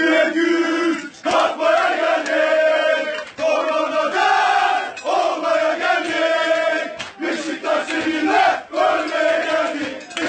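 A group of voices chanting a football supporters' song in unison, in short, held sung phrases with brief breaks between them.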